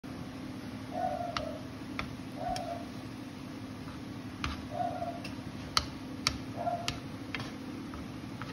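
Wooden chopsticks clicking against a ceramic-coated pan while stirring fried rice: about nine sharp, irregularly spaced taps, with four short squeaks in between, over a steady low hum.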